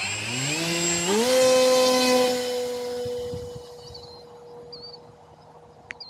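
A small brushless electric motor (1806, 2230 kV) with a 6x4 propeller on a foamboard RC plane, spooling up to high throttle for launch. Its whine rises in pitch in two steps over about the first second, then holds steady and fades as the plane climbs away. It runs near full throttle, which this under-powered model needs to stay in the air.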